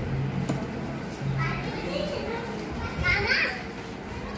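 Indistinct chatter from an audience in a hall, with higher, child-like voices rising above it twice, about a second and a half in and again about three seconds in.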